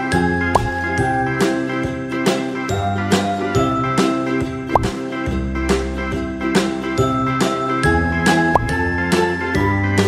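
Cheerful background music with tinkling, bell-like notes over a steady beat and a bass line.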